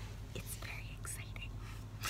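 Steady low hum of a car's cabin on the move, with a few faint soft breathy sounds in the first half.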